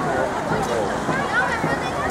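Spectators talking close by: a steady babble of several overlapping voices.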